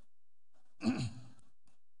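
A man's single short sigh into a close lectern microphone, about a second in, a breathy exhale with a little voice in it. It is followed by faint breath sounds.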